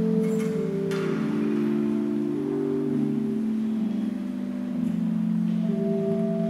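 Church organ playing slow held chords, each changing every second or two, with two short bright clicks in the first second.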